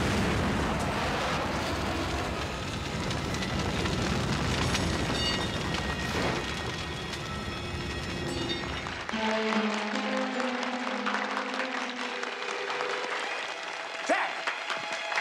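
A truck exploding, with a heavy, rumbling blast and burning wreckage that runs on for about nine seconds. Then it cuts off abruptly to held musical notes with hands clapping.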